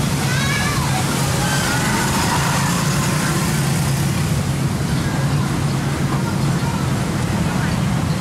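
Engine of an open-sided tour bus running steadily as it drives along, a low even hum with road and wind noise around it.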